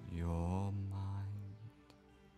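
A deep, low voice-like tone, chant-like, held for about a second and a half, then fading out under a soft, steady ambient music pad.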